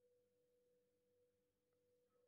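Near silence, with only a very faint steady tone in the background.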